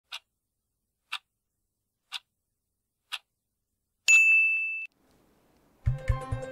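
Broadcast countdown clock ticking once a second, four ticks, then a single high electronic beep about four seconds in marking the hour. A news theme with heavy bass beats starts just before the end.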